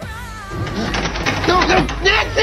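A song fades out about half a second in, giving way to a loud, chaotic horror-scene soundtrack of rapid crashes and knocks with several short, strained vocal cries.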